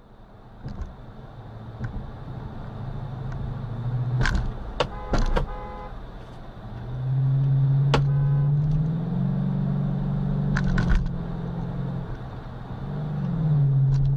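Engine and road noise of a car driving on a highway, heard from inside the car; the engine note rises and grows louder about seven seconds in. Several sharp clicks and two short pitched tones, one about five seconds in and one about eight seconds in, sound over the drone.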